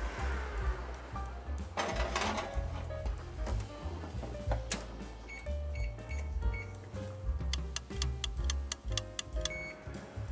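Frigidaire Gallery Series oven's electronic keypad beeping as buttons are pressed to set the timer: several short high beeps in quick succession about halfway through, and one more near the end. Background music plays underneath, and there is a brief clatter about two seconds in.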